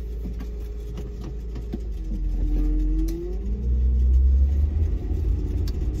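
Car engine running, heard from inside the cabin as a steady deep rumble that grows louder about four seconds in, with a short rising whine in the middle.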